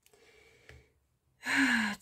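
A woman's breathy, voiced sigh, falling in pitch, about one and a half seconds in, after a moment of near quiet with one faint click.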